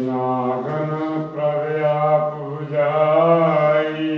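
A man's voice chanting in long, held notes with slow pitch bends, a Sikh devotional recitation.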